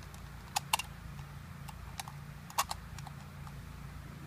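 Small sharp clicks and taps of a Saiga-12 shotgun feeder's spring and parts being handled as the spring is fitted back in. A pair of clicks comes just after the start and another a little past the middle, with a few single ones between, over a steady low hum.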